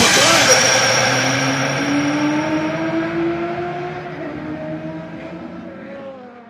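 Outro of an electronic trap remix fading out: a few held tones that slowly bend in pitch, with the whole track dying away over the last few seconds.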